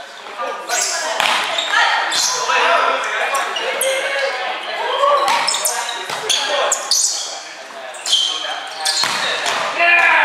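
A volleyball being struck by hands again and again during a rally, sharp hits that echo around a gymnasium, with players calling out between them.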